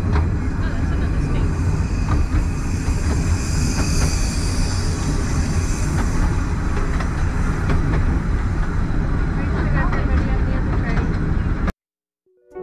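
Narrow-gauge railway carriage running along the track: a steady low rumble of wheels on rails with scattered clicks over the rail joints. A higher hiss swells and fades in the middle as another steam-hauled train passes on the adjacent line. The sound cuts off suddenly near the end.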